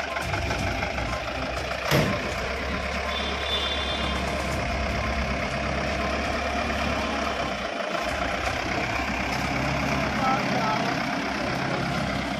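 Police van's engine running steadily, with a single sharp knock about two seconds in.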